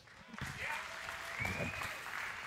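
Congregation applauding, fairly quiet and even, starting about half a second in, with faint voices among the clapping.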